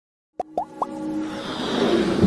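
Intro sting for an animated logo: three quick plops, each sweeping upward in pitch, in the first second, then a swelling musical riser that builds in loudness.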